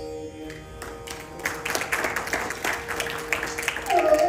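Audience applause: a burst of many hand claps that starts about a second in, as the held drone tones fade out. A bamboo flute starts a new phrase right at the end.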